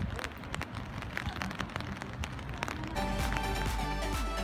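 Rain falling steadily, with scattered sharp ticks of drops striking close by. At about three seconds electronic background music with a steady beat comes in.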